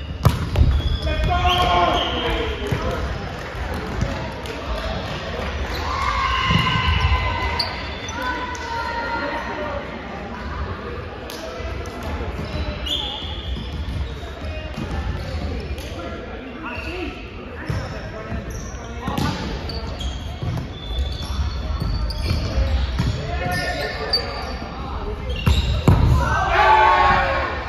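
Indoor volleyball play on a hardwood court: sharp hits of hands on the ball at the serve near the start and again at a dig just before the end, the ball bouncing on the floor, and players' shouted calls, all echoing in a large hall.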